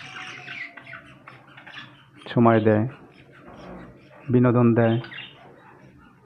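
Caged budgerigars chattering and chirping in soft, high twitters, with a man's voice speaking loudly over them twice, once in the middle and again near the end.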